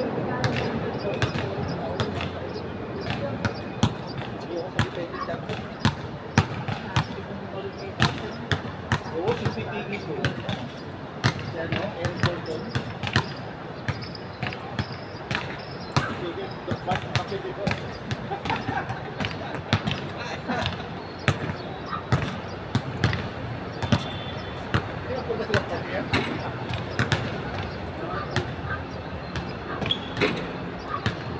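Basketballs bouncing on a hard court, many sharp bounces at irregular intervals, with people talking in the background.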